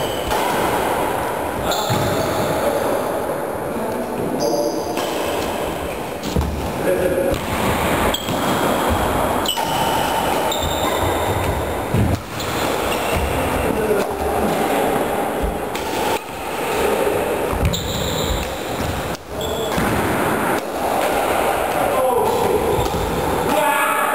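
Badminton rackets striking the shuttlecock in repeated sharp smacks, with sneakers squeaking and feet thudding on a wooden sports-hall floor. The sounds echo in a large hall, and voices sound in the background.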